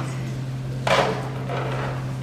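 A single sharp wooden knock about a second in, over a steady low electrical hum.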